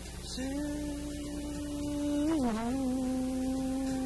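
A man singing long drawn-out notes with almost no accompaniment: one note held for about two seconds, a dip and swoop in pitch, then a second long held note.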